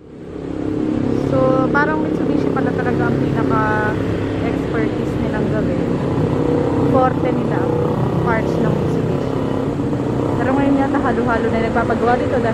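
Street traffic: vehicle engines running steadily, with motorcycles among them, and people's voices talking in the background.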